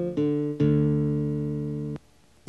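Background music of a plucked guitar: two notes in quick succession, the second ringing out and slowly decaying until it cuts off abruptly at the end.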